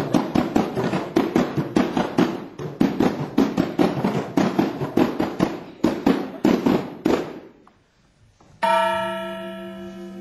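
Hand-beaten frame drums played in a fast, even rhythm of about four strokes a second, stopping abruptly about seven seconds in. After a brief silence, a single struck note rings out and slowly dies away.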